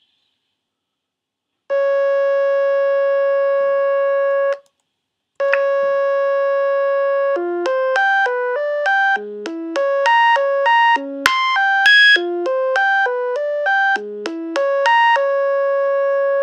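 Pure Data software synthesizer, a sawtooth phasor~ oscillator, sounding a bright buzzy tone: after a moment of silence it holds one note, stops briefly, holds it again, then about seven seconds in starts stepping through a 16-step sequenced melody, a new pitch about every 0.3 seconds, set by a 300 ms metro. One sharp click cuts through partway along.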